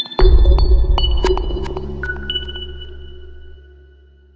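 Electronic music sting of a TV channel's logo ident: high pinging tones and sharp clicks over a deep bass hit just after the start, which slowly fades away.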